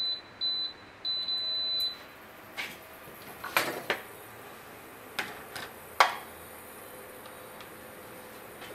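Induction hob control panel beeping: two short high beeps, then one longer beep lasting about a second, as the hob is switched on under a pan of milk. Then comes a handful of knocks and clinks of a stainless-steel bowl being handled and set down, the sharpest about six seconds in.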